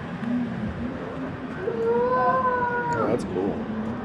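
A high, drawn-out vocal call held on one pitch for about a second and a half, starting just under two seconds in and falling away at its end, over the murmur of a busy hall.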